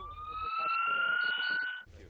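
Ambulance siren wailing in one slow rise in pitch that lasts nearly two seconds, then cuts off abruptly.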